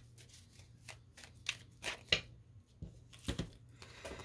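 A tarot deck shuffled by hand: a scattered series of soft card flicks and snaps, the loudest about two seconds in and just after three seconds.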